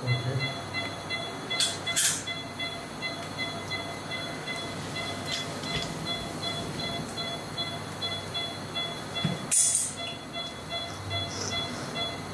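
Operating-room background: a steady hum of equipment with faint sustained tones, broken by a few short clicks of instruments about two seconds in and again near ten seconds.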